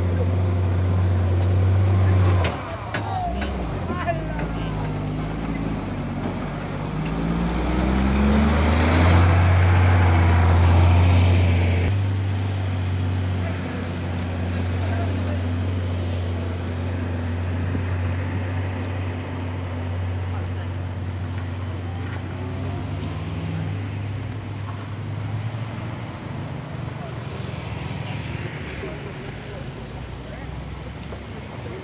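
Coach bus engine labouring up a steep dirt incline: a heavy low drone that falls away about two and a half seconds in, then climbs in pitch and grows loudest as the bus comes past, around ten seconds in. Afterwards, quieter engines of following cars and a motorcycle.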